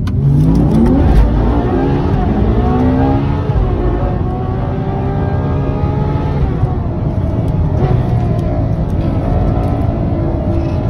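Ferrari 812 Superfast's V12 engine heard from inside the cabin, accelerating hard with its pitch climbing over the first few seconds. After that it eases back and runs steadily at cruising speed.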